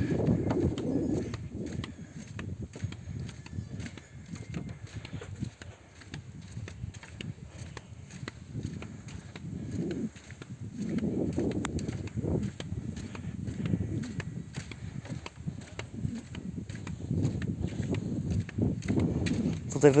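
Footsteps on the planks of a wooden boardwalk, a steady run of light knocks, with gusts of wind rumbling on the microphone.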